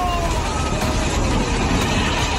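Steady roar of a fast torrent of floodwater, with two long, slightly falling tones over it for the first second and a half.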